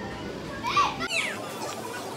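Children's high-pitched calls and squeals in the background, loudest about a second in, over a steady outdoor hiss.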